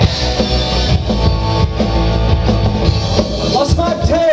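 Live rock band playing an instrumental stretch of a song: electric guitars, electric bass and drum kit playing together at full volume.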